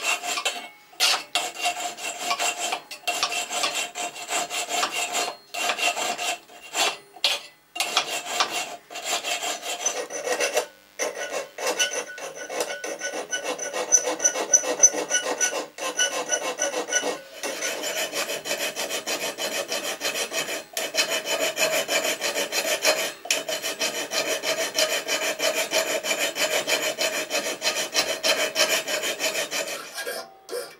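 Hand file scraping back and forth on the steel trigger guard of a side-by-side shotgun held in a vise, in runs of quick strokes with short pauses, running more evenly in the second half.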